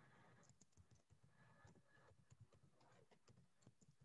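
Near silence with faint, irregular clicks of typing on a computer keyboard.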